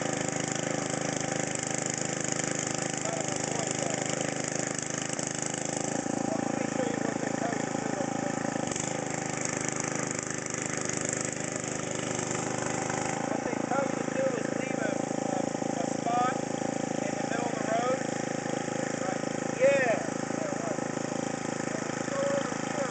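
Husqvarna DRT900E rear-tine rototiller's small gasoline engine running steadily. Its note shifts a couple of times but does not stop.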